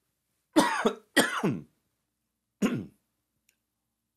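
A man clearing his throat with three short coughs, each falling in pitch: two close together about half a second in, and a third near three seconds in. His voice is rough and sore.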